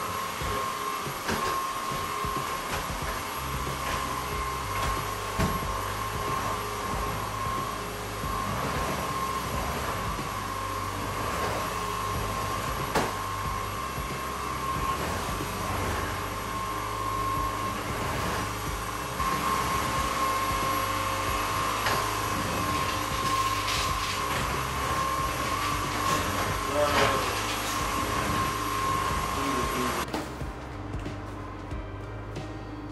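Cordless stick vacuum cleaner running with a steady high motor whine, which cuts off at the very end, over background music with a moving bass line.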